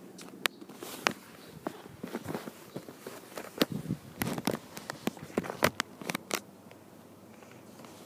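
Handling noise: scattered clicks, taps and rustling as hands move small plastic toys and props about, busiest in the middle few seconds.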